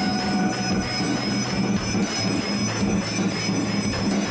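Temple bells ringing without pause during aarti: steady high metallic ringing over a low, evenly pulsing beat.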